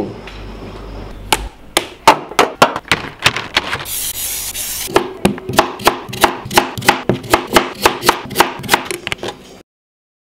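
Kitchen knife chopping a sweet potato into rounds on a cutting board: a run of sharp knocks, settling into about three a second, that cuts off abruptly near the end.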